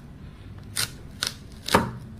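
Kitchen knife cutting into a watermelon on a wooden cutting board: three short, sharp cuts about half a second apart, the last the loudest.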